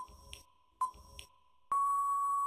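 Quiz countdown timer beeps: two short electronic beeps a little under a second apart, then a longer, steady beep near the end as the timer runs out.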